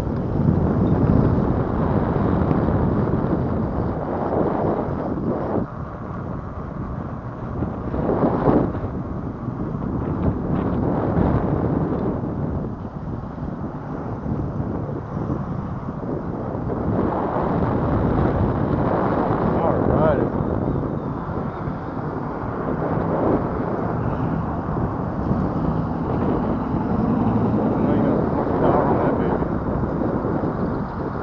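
Wind buffeting the microphone of a camera on a moving bicycle, over the rumble of its tyres on cracked, potholed asphalt; the noise swells and eases as the ride goes on.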